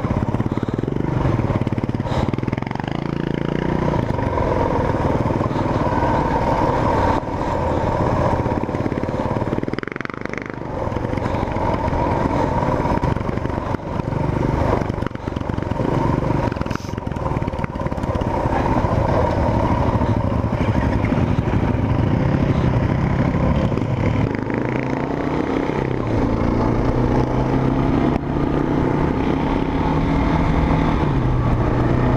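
Single-cylinder dual-sport motorcycle engine running under way, heard from on the bike itself, with the clatter of a rough dirt track. The engine note dips briefly about a third of the way in and rises near the end as the bike picks up speed.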